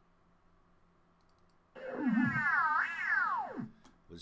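A synthesized sci-fi sound effect previewed from a computer. It starts a little under two seconds in, warbles up and down in pitch for about two seconds, then glides steeply down and stops.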